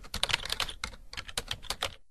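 Rapid, uneven clicking of computer keyboard keys being typed, about ten clicks a second.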